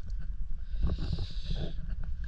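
A person's breathy exhale, a hiss lasting about a second, over a steady low rumble.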